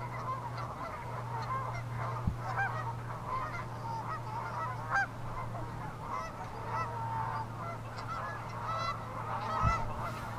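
A flock of Canada geese honking, many short calls overlapping throughout, over a steady low hum. A brief low thump comes about two seconds in and a louder one just before the end.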